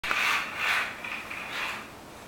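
A child's toy push car rolling over a hard floor: a scraping, rumbling noise that swells and fades three times.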